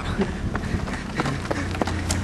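Footsteps of a person running, faint ticks about every half second over a steady outdoor background.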